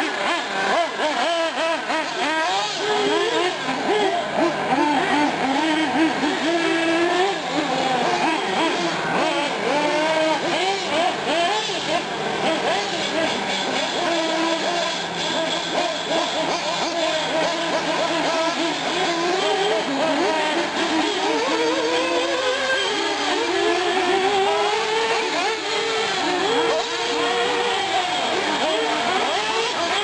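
Several 1/8-scale nitro R/C off-road cars' small glow-fuel engines whining as they rev up and down around the track, their pitches rising and falling and overlapping.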